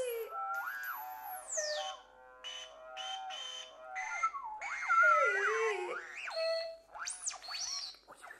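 Electronic music of swooping, gliding tones. A high whistling tone falls away about two seconds in, followed by short stepped notes and warbling tones that slide down and back up, with arching sweeps near the end.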